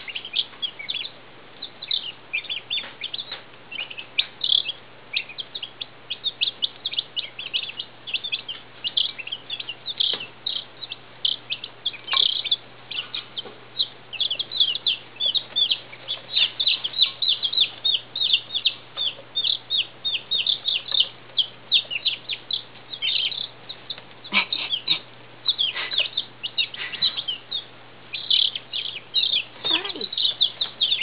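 A brood of young Midget White turkey poults and Icelandic chicks peeping together: a dense, nearly unbroken stream of short, high-pitched peeps, many a second, over a low steady hum.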